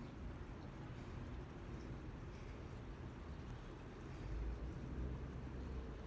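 Faint outdoor background with a low steady rumble that swells a little about four seconds in.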